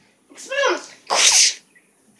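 A child making spell-zap sound effects with his mouth: a short voiced cry sliding down in pitch, then a loud hissing burst.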